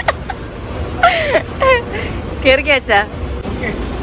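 Short bursts of people's voices over a steady low rumble of road traffic.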